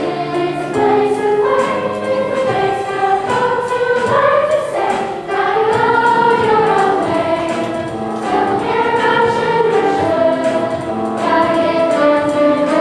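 Children's choir singing a song with instrumental accompaniment, the voices holding and gliding between sustained notes.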